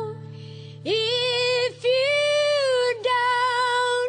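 Song with a female singing voice: after a short pause, three long held notes are sung over a steady, sustained low instrumental chord.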